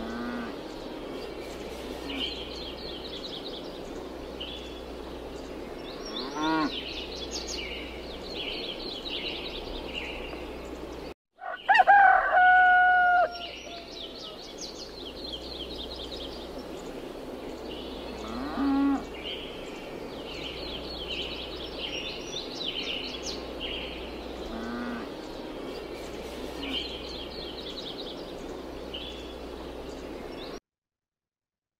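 Farmyard ambience: small birds chirp throughout. A farm animal gives a loud, held call about twelve seconds in, right after a brief gap in the sound, and there are shorter falling calls around six and nineteen seconds.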